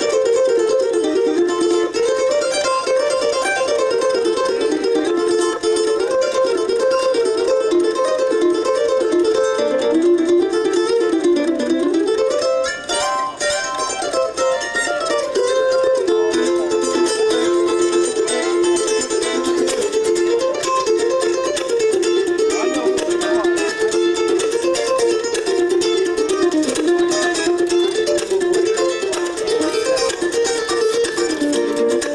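Two mandolins playing an instrumental duet together, picking quick runs of notes without a break.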